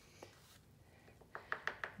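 Near silence, then from about halfway through a quick run of five or six light clicks and taps from handling a small jar of silver embossing powder as the powder is put onto the card.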